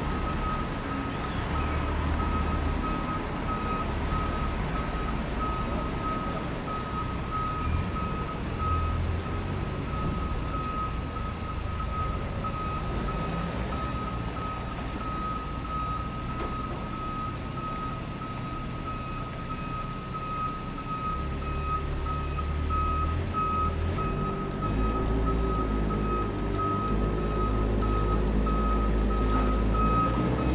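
Truck reversing beeper: a single high-pitched tone pulsing in a steady, even rhythm, over a low rumble.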